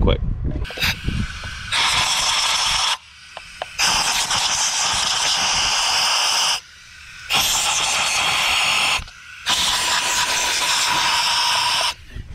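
Compressed air from an air duster hissing through a thin nozzle into the spark plug wells of an engine, blowing out sand. It comes in four long blasts with short pauses between them.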